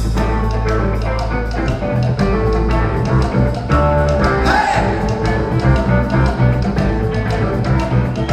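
A live rock band playing a passage between sung verses, with electric guitars, bass and a steady drum-kit beat.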